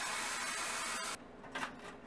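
Kitchen faucet running into a drinking glass: a steady rush of water that cuts off suddenly about a second in. A few faint rustles follow.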